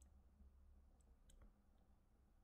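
Near silence over a steady low hum, with a few faint clicks of a stylus writing on a touchscreen, the sharpest about a second in.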